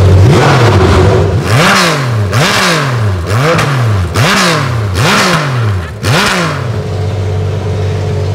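Race-tuned flat-six engine of a 996-generation Porsche 911 endurance race car, blipped about six times from idle. Each time it revs up sharply and drops straight back, very fast, the way a high-revving racing engine does. It is very loud, reaching 123.4 dB on a sound level meter.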